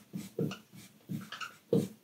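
Dry-erase marker squeaking on a whiteboard in several short strokes while numbers and units are written.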